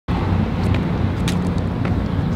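Steady low rumble of road traffic and vehicles, with a few faint clicks spaced about half a second apart.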